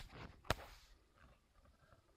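A fingertip tapping the glass touchscreen of an iPod touch once, a single short sharp click about half a second in, after faint handling rustle; then near silence.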